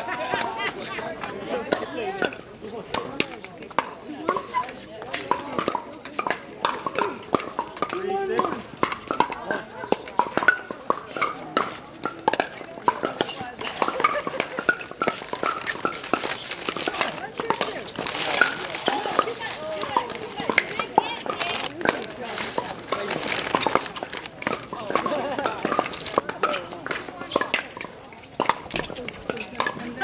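Pickleball paddles hitting the plastic ball during rallies: sharp pops at irregular intervals, over indistinct chatter of players and people around the courts.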